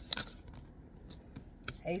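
Tarot cards being handled and drawn from the deck: a few light clicks and flicks of card against card, the sharpest just after the start.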